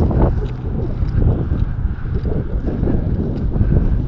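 Wind rumbling on the microphone, with footsteps and rustling as the camera is carried across grass.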